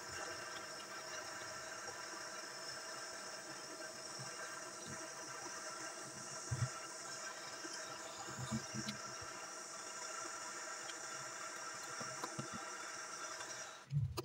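Jeweller's gas torch flame hissing steadily while heating a silver ring on a soldering block, then cutting off suddenly near the end as the flame is shut off.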